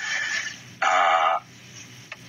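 A man's voice drawing out a hesitant "A..." for about half a second, just after a short breathy sound at the start.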